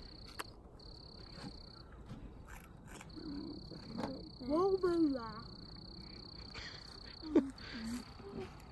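A steady, high-pitched insect trill in long stretches with short breaks. A child's brief wordless voice rises and falls about halfway through, and a short sharp knock near the end is the loudest moment.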